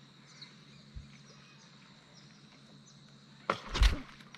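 Quiet river ambience with faint bird chirps, then about three and a half seconds in a sudden loud, rushing burst of noise with a heavy low rumble, lasting about half a second.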